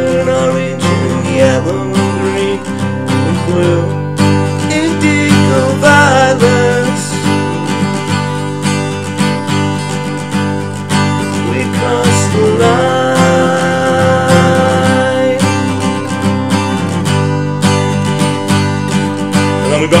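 A capoed Taylor 214ce acoustic guitar strummed in a steady rhythm through the bridge chords, Dsus2, Asus2 and E, with the chords ringing on between strokes.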